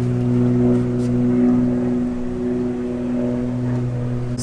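A motor running steadily, giving a low, even hum with a few clear tones that do not change.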